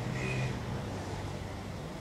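Road traffic passing on the street: motorcycle engines running as they go by, a steady low hum.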